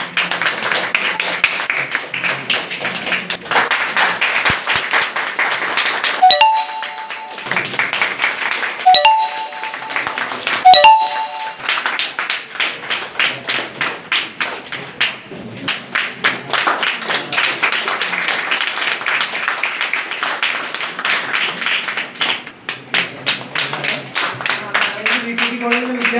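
Crowd applause, a steady run of many hands clapping. Three times, about six, nine and eleven seconds in, a short sharp click comes with a brief chime-like cluster of tones, the loudest sounds in the stretch.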